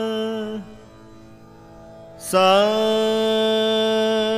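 Male Carnatic vocalist singing swaras in raga Shankarabharanam. A long held note ends about half a second in. After a pause with only a faint drone, he slides up into a new long, steady "sa" a little past the two-second mark.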